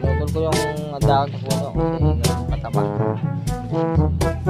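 Background music: a jazzy tune with brass or saxophone lines over a walking bass and a steady beat.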